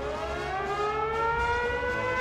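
Civil defence siren winding up: its pitch rises steeply at first, then climbs more slowly and settles into a steady wail.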